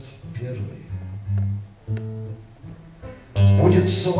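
Acoustic guitar between sung lines: a few separate plucked low notes, then loud strumming starts suddenly near the end.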